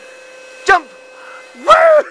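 Voices: a short call about 0.7 s in, then a loud, high-pitched excited cry near the end as a toddler jumps into a man's arms.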